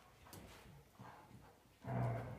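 A dog making a few soft, low vocal sounds while playing, with a louder one near the end.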